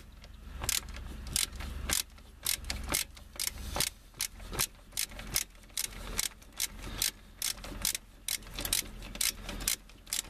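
Ratchet on a long extension clicking steadily, about two to three clicks a second, as it backs off the 21 mm nut that holds the shift cable to the automatic transmission's manual lever.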